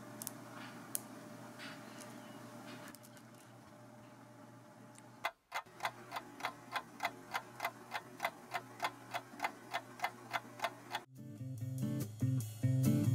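Quiet room tone with a few light clicks, then a clock ticking steadily, about four ticks a second, for several seconds. The ticking stops suddenly and guitar music begins near the end.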